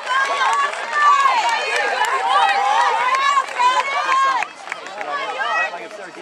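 Many voices cheering and shouting over one another in celebration of a goal. The sound cuts off abruptly about four and a half seconds in, giving way to quieter scattered shouts.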